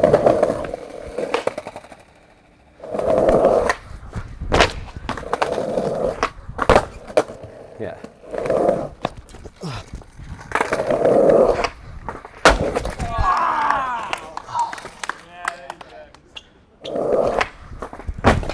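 Skateboard wheels rolling over stone paving in repeated short runs, with sharp clacks of the tail popping and the board slapping down on stone several times.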